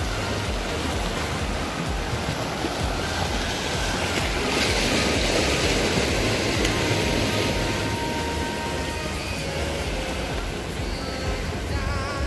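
Small sea waves washing over a concrete shore and rocks, a steady rush of surf that swells for a few seconds around the middle, with wind rumbling on the microphone.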